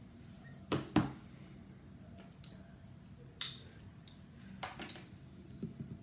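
Quiet room with a few small handling sounds: two short knocks or clicks about a second in, then a brief hiss-like rustle about halfway through and a fainter one shortly after.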